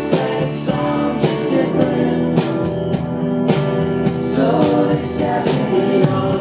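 Live rock band playing: a male voice singing over electric guitar and a drum kit, with cymbal strokes about once a second.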